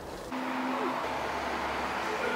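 Steady mechanical hum and hiss of a running machine, setting in about a third of a second in, with a deeper low drone joining about a second in.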